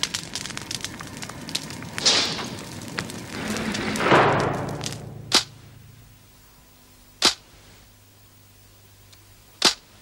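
Fire crackling, with two flare-ups, fading out after about five seconds. Then three sharp snap sound effects, about two seconds apart.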